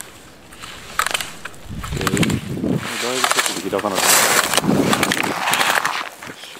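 A voice calling out loudly, "yoshi", in two stretches, over a hiss of ski edges scraping and carving on hard snow, with one sharp knock about a second in.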